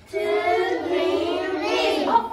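Children singing a song together, the singing starting a moment in and carrying on without a break.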